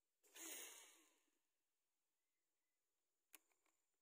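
Near silence, broken by a faint swish about a second long from a fishing rod being handled. Near the end comes a sharp click and a few softer clicks from the rod and reel.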